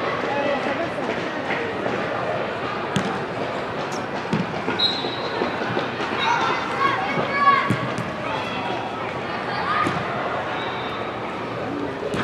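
Faint, distant voices of players and spectators over steady crowd noise, with a few sharp thuds of a soccer ball being kicked on artificial turf.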